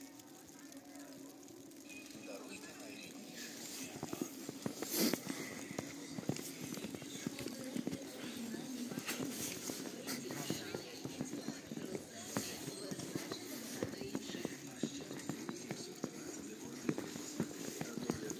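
Footsteps crunching through fresh snow, starting a few seconds in and getting louder, with the faint voices of people talking.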